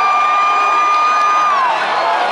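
Concert crowd cheering, with one fan's long high-pitched scream held steady and then trailing off downward about one and a half seconds in.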